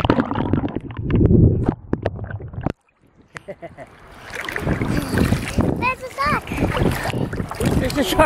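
Sea water splashing and sloshing against a GoPro in its waterproof housing at the surface, heard muffled. The sound drops out abruptly about three seconds in, then the splashing resumes with a child's high laughing calls about six seconds in.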